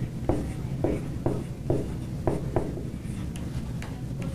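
Dry-erase marker writing on a whiteboard: a run of short strokes, about two a second, over a steady low hum.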